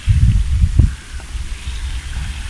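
Fountain jet spraying and splashing into a pond as a steady hiss, with low rumble from wind on the microphone, heaviest in the first second.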